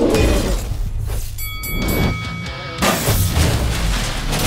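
Background music under a transition sound effect: a low rumble and a sweep, a ringing high tone in the middle, then a sudden crash about three seconds in.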